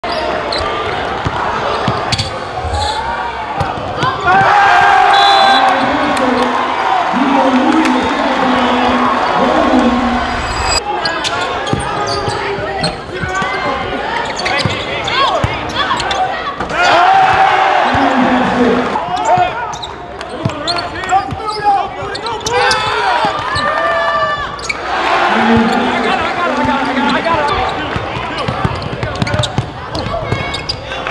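Basketball being dribbled on a hardwood gym court during play, the ball's repeated bounces mixed with players' and spectators' voices.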